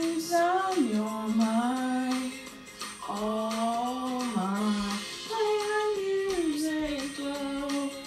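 A woman singing a pop song into a handheld microphone, holding long notes that slide and step between pitches, with music underneath.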